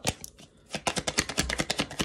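A deck of tarot cards being shuffled by hand: one click, a short pause, then a quick run of card slaps, about ten a second, from about a second in.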